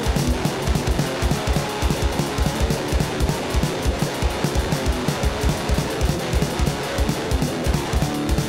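Instrumental rock passage with no vocals: guitar over a fast, steady kick-drum beat, about six beats a second.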